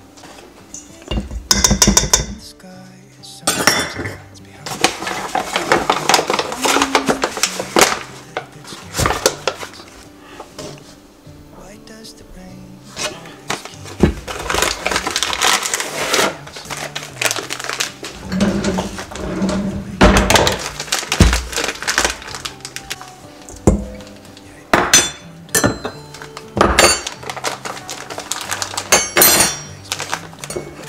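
Metal measuring cup clinking and scraping against a stainless steel mixing bowl as flour is scooped and added, in several bouts of clatter, over background music.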